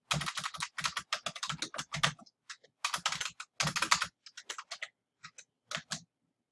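Typing on a computer keyboard: quick runs of key clicks for about four seconds, thinning out to a few scattered keystrokes near the end.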